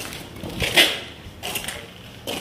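A few scuffing footsteps on a gritty concrete floor, the loudest about a second in.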